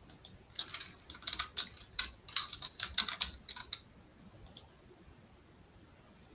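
Typing on a computer keyboard: a quick, uneven run of keystrokes lasting about three seconds, then one more stroke a little later.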